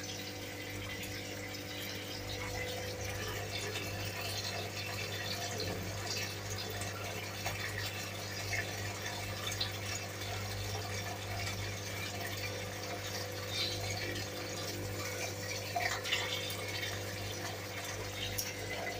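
Water in a fish tank splashing and trickling steadily, over a low steady hum.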